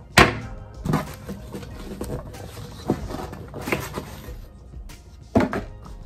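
A few knocks and thuds from a package box being handled and opened, the loudest just after the start and about five and a half seconds in, over faint background music.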